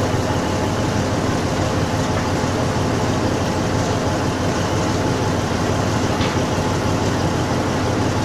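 Crane truck's diesel engine running steadily at an even speed, with no change in pitch.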